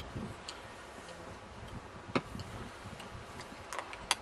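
A few scattered sharp clicks over a faint low rumble, the loudest click about two seconds in and a couple more near the end.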